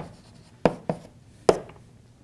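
Chalk writing on a blackboard: four sharp taps and short strokes as letters are written, with quiet room tone between them.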